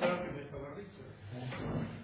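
Faint speech from a person away from the microphone.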